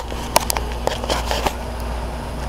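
Handling noise of a handheld camera being swung around: a scatter of short clicks and rustles in the first second and a half, over a steady low hum.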